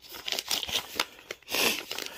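Clear plastic packaging crinkling as it is handled: a run of crackles, loudest near the end.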